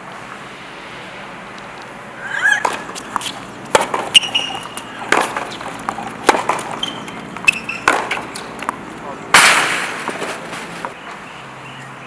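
A tennis rally on a hard court: sharp cracks of racket strings striking the ball and the ball bouncing, coming roughly a second apart, with short squeaks of shoes on the court surface. About nine seconds in, a brief louder rush of noise follows the rally.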